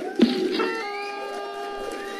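Celebration sound effect with an on-screen confetti burst: a held, buzzy pitched tone that starts about half a second in, with a rising whistle above it.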